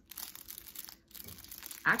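Clear plastic sleeves crinkling as makeup spatulas in their packaging are handled, in two stretches with a short pause about halfway.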